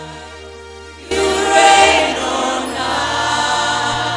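Live church worship music, with choir and congregation singing together. A held note fades out, then the sound swells suddenly louder about a second in.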